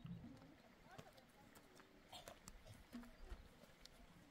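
Quiet den sounds from a dog: a few faint, brief whimpers and scattered light clicks.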